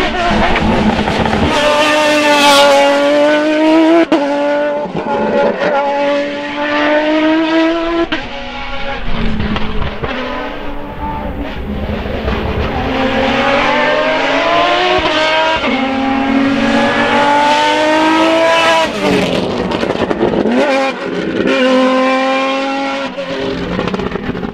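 Race car engine running hard at high revs up a hill-climb course. Its pitch climbs under acceleration and drops sharply at each gear change, several times over.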